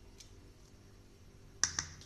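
Two sharp taps in quick succession near the end, a utensil knocking against the bowl while the last of a pink cheesecake topping is poured into the pan.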